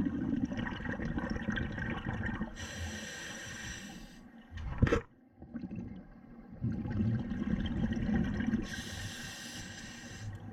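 Scuba diver breathing through a regulator underwater: a low rumble of exhaled bubbles alternates with the high hiss of an inhalation, twice over. A single sharp knock is heard midway.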